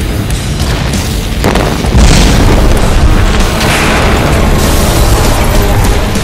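Loud booming sound effects over music, with a sharp rise in level about two seconds in and another swell around four seconds.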